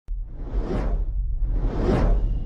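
Cinematic logo-intro sound effect: two whooshes, each swelling up and fading away, about a second apart, over a deep steady rumble.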